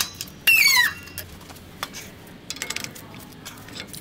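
U-joint being pressed together in a shop press: a short, high metal-on-metal squeal that falls in pitch, about half a second in. A few faint clicks follow.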